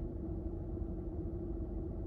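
Steady low hum of a car idling, heard inside its cabin, with a steady mid-pitched tone running through it.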